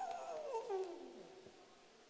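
A woman's long, animal-like vocal call into a handheld microphone, sliding down in pitch and fading away about a second and a half in.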